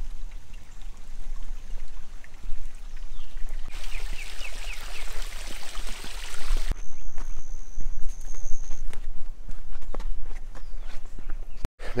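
Footsteps along a woodland trail, heard as scattered crunches over a steady low rumble of wind on the microphone. Midway there are a few seconds of hiss, then a steady high-pitched tone for about two seconds.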